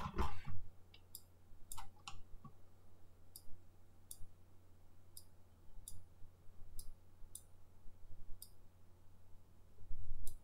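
Computer mouse clicking: a dozen or so single clicks at uneven intervals, more of them in the first second, over a faint steady low hum.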